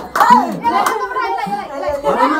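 A group of young people's voices, talking and laughing, with a few sharp hand claps.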